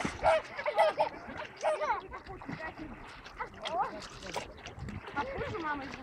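A dog paddling and splashing in shallow sea water, with short voice-like calls over it.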